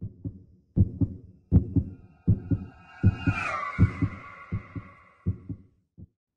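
Heartbeat sound effect: pairs of low thumps repeating roughly every three-quarters of a second. A higher drawn-out tone comes in about halfway, slides down a little, and fades out.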